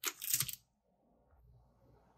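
Brief rustle of packaging being handled, lasting about half a second, then near silence.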